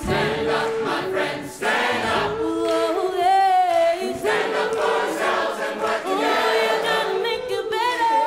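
Mixed choir singing with soloists in front, the sound carried mostly by the voices with little bass underneath. About three seconds in, one high note is held for about a second with wide vibrato.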